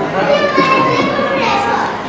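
Several children's high voices at once, talking and calling out over each other.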